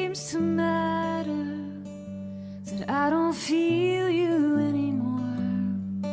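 Slow worship song: a woman singing two held phrases over acoustic guitar and sustained low notes.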